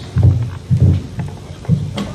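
A man's voice making short, low, non-word vocal noises into a microphone as an impersonation: three brief bursts, the last near the end.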